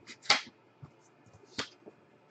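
A few sharp snaps and clicks from trading cards being handled and flicked off a stack, the loudest about a third of a second in and another about a second and a half in.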